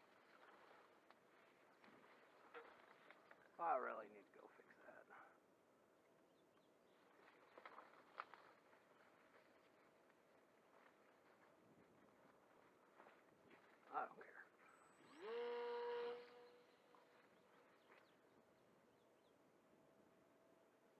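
Mostly near silence, broken by a few brief, faint vocal sounds and one held, steady-pitched vocal tone lasting about a second, about three-quarters of the way through.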